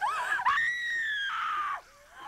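A woman's high-pitched horror-film scream from the film's soundtrack. It starts abruptly with a short bending cry, then holds one long scream that falls slowly in pitch before cutting off.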